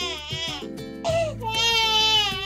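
A three-month-old baby crying in long wails, one cry trailing off and a new one starting about a second in, over background music.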